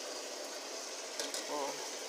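Chicken pieces searing in hot oil in a pot under a glass lid, a steady sizzle, with a few faint ticks a little over a second in.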